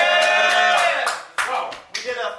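A man's long drawn-out shout of "hey", then scattered hand claps from a small crowd during the second half, a handful of irregular claps answering the call to make noise.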